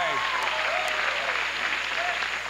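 Studio audience applauding steadily, with a few voices over it.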